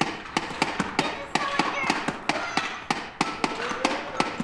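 A child's hand tapping and slapping on a small wooden board: quick, irregular sharp taps, about four or five a second.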